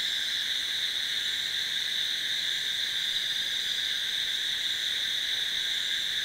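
Dense chorus of night insects, a steady high-pitched buzz without pauses.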